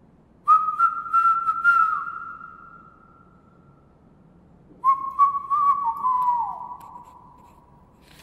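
Whistling: two long, high, steady notes, each starting abruptly and fading out over a couple of seconds, with the pitch sliding down at the end of each.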